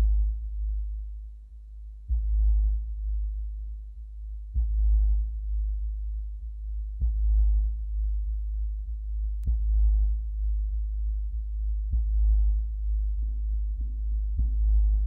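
Electronic sound-design music: a deep pulse, each with a short ping above it, repeating about every two and a half seconds over a steady low drone.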